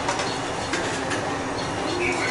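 Steady rushing background noise, with a few faint light clicks from pliers working on switchboard wires.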